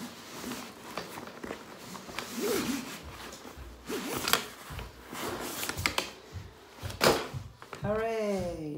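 Fabric rustling and scattered plastic and metal clicks and knocks from a Bugaboo Fox bassinet frame being handled, its fabric cover pulled off the wire and the aluminium tubes moved, with a sharp knock about seven seconds in.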